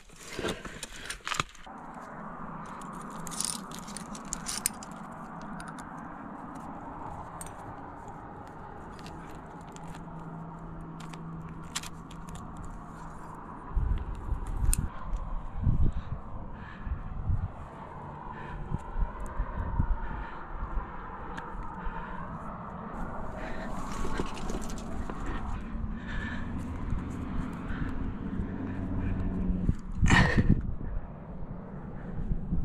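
Metal climbing gear clinking and rattling, with scrapes of hands on granite during a crack climb, over a steady background hum. Dull thumps come about halfway through.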